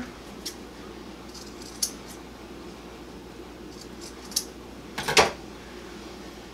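Handling of a fabric bag strap threaded through a metal slide buckle: a few scattered light clicks and clinks, the loudest about five seconds in, over a faint steady room hum.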